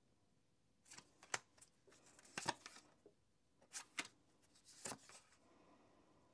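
A deck of tarot cards being handled and shuffled between the hands: crisp card snaps and flicks in four short clusters, as a card is drawn from the deck.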